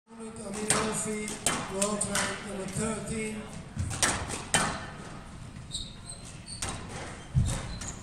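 Squash rally: the ball cracking off rackets and the court walls in a string of sharp hits at irregular intervals, echoing in the court, with a few short high squeaks of shoes on the court floor in the second half.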